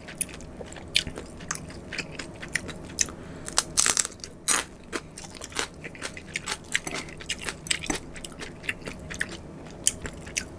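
Close-miked chewing of food, with many crisp crunches and crackles; the loudest run of crunches comes about four seconds in.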